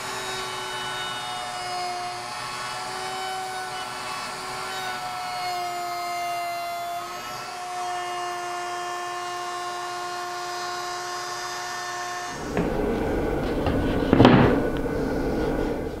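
Table-mounted router with a 3/8-inch bearing-guided rabbeting bit running with a steady high whine while a board is fed along the bit, its pitch dipping slightly at times under the cut. About twelve seconds in the whine stops and a louder, rougher noise with a low rumble takes over.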